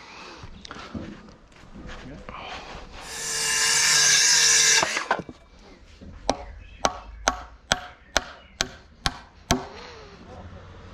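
A steel claw hammer driving a nail into a wooden profile board, nine sharp blows at about two a second in the second half. Before that, a loud hiss from a power tool runs for about two seconds.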